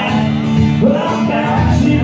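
Live solo acoustic guitar, strummed and heard through the venue's sound system, with a man singing along.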